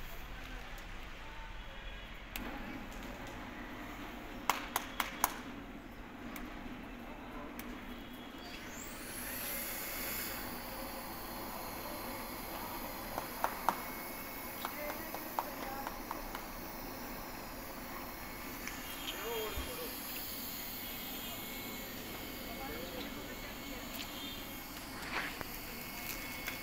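Continuous band sealer running: a few sharp clicks about four to five seconds in, then a whine that rises in pitch near nine seconds in and settles into a steady running hum and hiss as its motors and fan come up to speed.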